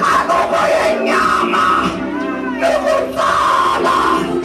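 Loud massed voices of a church congregation and choir singing and shouting together, with one voice rising and falling in pitch a little past the middle.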